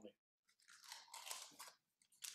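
Faint crackling rustle, lasting about a second, as a small round cheese is picked up and turned over in the hands.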